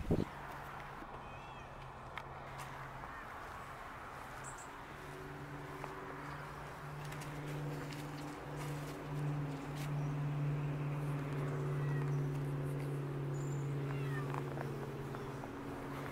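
A domestic cat meows briefly, once soon after the start and again near the end, over a steady low droning hum that swells in the middle and eases toward the end.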